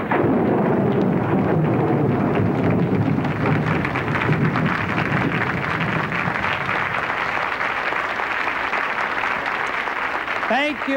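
Audience applauding steadily, a little softer toward the end.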